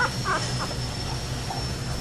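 Newborn puppies squeaking faintly, a couple of short high squeaks near the start, then quieter.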